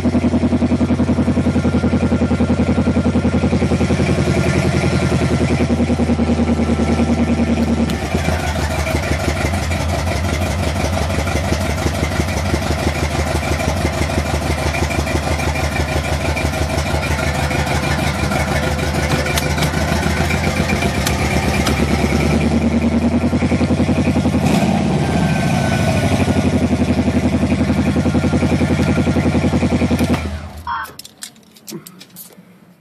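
Stage-1 Buick 455 V8 with a Holley 850 double-pumper carburettor, running at a steady fast idle, heard from inside the car. The pitch shifts briefly about three-quarters of the way through, and the engine is revved near the end.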